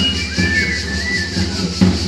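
Provençal pipe-and-tabor music: a high three-hole pipe melody over a steady, even beat on the tambourin drum, playing for a dance.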